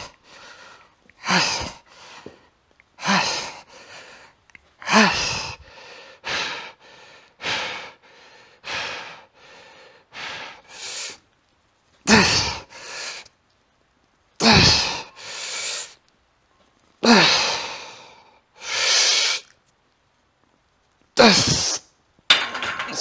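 A weightlifter breathing hard through a set of barbell bench presses: a forceful, partly grunted breath with each rep, coming about every one and a half seconds at first, then longer and further apart over the last reps as the set gets harder.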